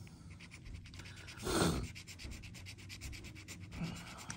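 A thin tool scratching the coating off a scratch-off lottery ticket in quick, repeated strokes, with a brief louder burst about a second and a half in.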